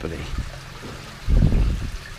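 Small stream trickling over rocks, a steady watery hiss, with a brief low rumble a little past halfway.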